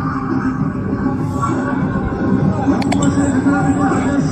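Loud music playing with a hubbub of people's voices, recorded at a distance on a phone. There are two quick sharp clicks about three seconds in.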